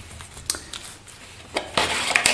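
Hands handling a cardboard phone box: light scrapes and taps of the card parts, with a short click about half a second in and a louder rustle a little after one and a half seconds as the inner card tray is lifted.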